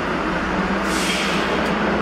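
Steady low hum inside a stationary elevator car, with a brief hiss about a second in.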